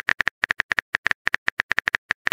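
Phone keyboard key-click sound effect, one short click per letter as a text message is typed. The clicks run quickly and evenly, about seven or eight a second.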